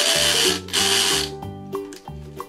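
Toy blender running in two short bursts, each about half a second long, after its power button is pressed. Background music with a steady beat plays underneath.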